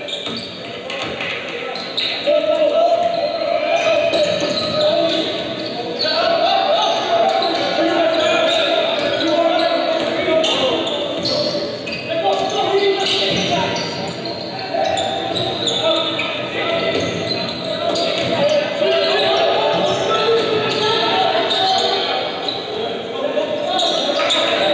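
A basketball bouncing on a hardwood gym floor as it is dribbled, under a steady din of crowd and player voices and shouts echoing through a large gym.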